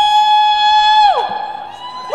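A male singer holding one long, high sung note, which slides down and breaks off about a second in.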